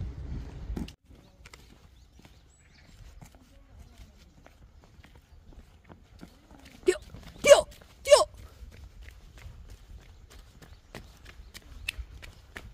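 Footsteps in rubber boots on brick paving, a run of short clicks that quickens into jogging steps in the second half. About seven to eight seconds in, three short loud cries that bend in pitch stand out above the steps.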